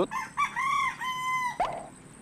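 A rooster crowing once: a few short notes, then a long held note that ends with a quick drop in pitch.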